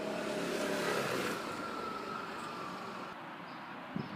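A car driving past, its noise swelling to a peak about a second in and then fading away.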